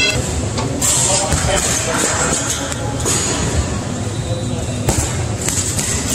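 Gym background music with voices, broken by a few sharp thuds of punches landing on a heavy punching bag.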